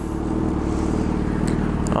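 2006 Yamaha FZ6's 600cc inline-four idling steadily through an aftermarket SP Engineering dual carbon exhaust.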